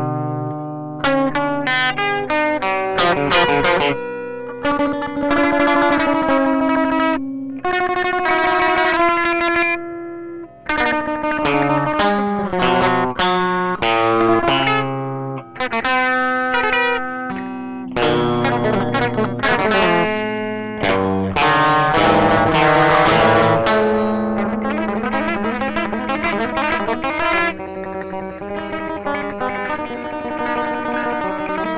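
Guitar played as a free improvisation: quick runs of single plucked notes mixed with held notes and chords, with two brief breaks about ten and fifteen seconds in.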